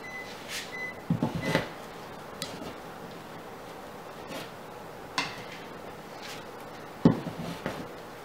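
A hand screwdriver working a screw into drywall: short knocks and scrapes in clusters, loudest about a second in and again near the end, with a single knock around five seconds.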